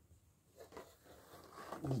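Faint rustling and scraping of a cardboard box and its packaging being handled as the contents are fitted back in. A man's voice starts just before the end.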